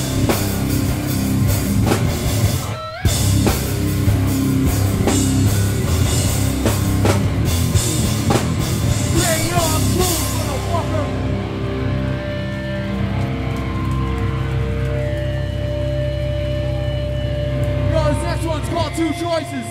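Hardcore punk band playing live: distorted guitars, bass and drum kit, with a brief stop about three seconds in. About eleven seconds in the drums drop out and the guitars and bass are left ringing on held notes.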